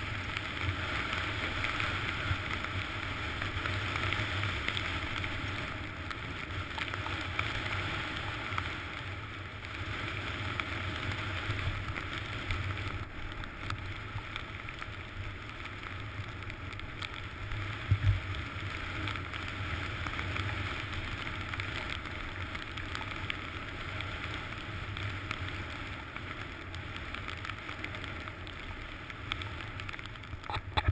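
Skis running over snow with wind rushing past a helmet-mounted camera: a steady hiss over a low rumble, with a single thump about 18 seconds in.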